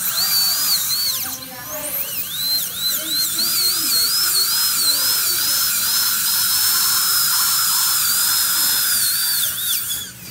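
Dental drill handpiece whining high as it grinds off the glue holding a palatal expander's wires. Its pitch sags again and again as the bur bears on the glue, with a short break a little over a second in. It runs steadier through the middle, then dips and stops at the end.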